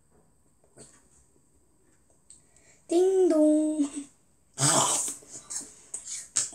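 A child lets out a drawn-out voiced sound about halfway through, then bites into a large apple: a loud, sudden crunch near the end, followed by smaller chewing clicks.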